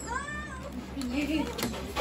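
A short high-pitched call that rises and falls in pitch, then a person's voice in the background.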